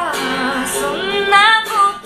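A woman singing to her own guitar accompaniment. Her voice bends and slides between held notes over sustained guitar chords.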